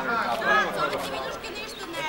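People talking casually, voices overlapping in chatter.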